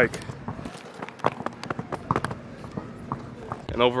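Irregular light knocks and clicks, like quick footfalls, with faint voices behind them.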